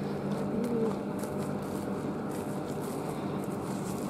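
Steady low hum, with light footsteps on a gritty pavement.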